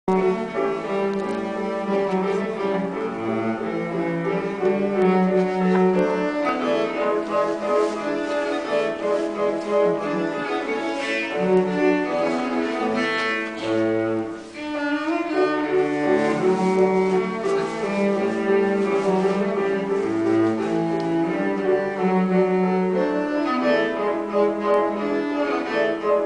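Cello playing a sustained, melodic line with grand piano accompaniment, with a short lull about halfway through.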